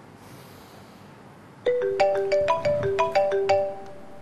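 A mobile phone ringtone: a quick melody of short, ringing notes that starts a little under halfway through and stops just before the end.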